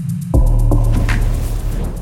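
Electronic music with a deep, heavy bass that drops out briefly and comes back in hard about a third of a second in, with a whooshing sweep about a second in.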